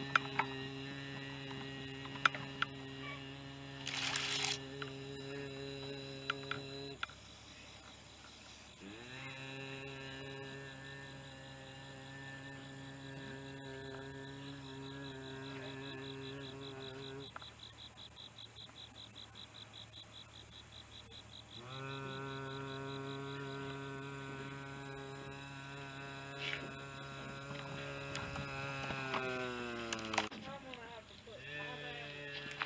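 A man humming a steady low note to imitate a drone's buzz, in three long held hums of about eight seconds each. The pitch slides up at the start of the later hums and down at the end of the last. A softer pulsing flutter fills the gap between the second and third hums.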